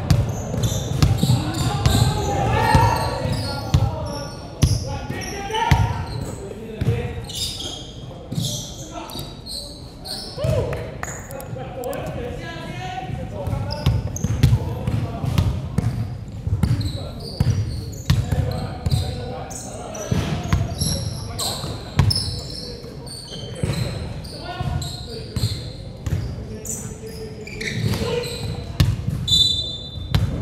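Basketball bouncing on a hardwood gym floor during play, a series of sharp knocks, mixed with players' shouts echoing in a large sports hall.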